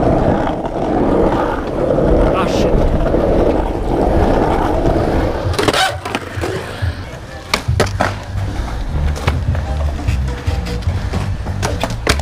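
Skateboard wheels rolling over a rough asphalt pump track, a steady loud rumble. About six seconds in this gives way to the clatter of skateboards on concrete: a string of sharp pops, clacks and landing knocks, with another hard clack near the end.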